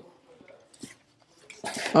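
Faint rustling and a small click as a protective wrapping sleeve is slid off a Tesla Wall Connector charger unit. A voice starts near the end.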